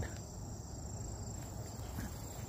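Insects trilling in one steady high-pitched tone, over a low background rumble.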